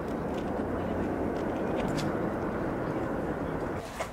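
Steady low outdoor background rumble, as of an open-air urban park, with a single faint click about two seconds in.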